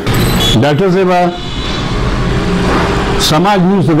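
A man speaking in two short phrases, one near the start and one near the end, over a steady rushing background noise that fills the gap between them.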